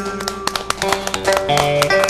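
Vietnamese cổ nhạc plucked-string accompaniment playing an instrumental passage between sung lines of a vọng cổ: a run of quick plucked notes with some notes left ringing.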